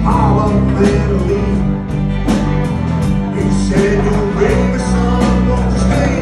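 Live country-rock band playing: acoustic and electric guitars, bass guitar and a drum kit keeping a steady beat, with a man singing lead into the microphone.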